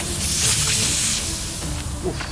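Natural gas hissing as it escapes from a bent outlet pipe on a gas pipeline: a leak. The hiss is strongest in the first second, then eases slightly.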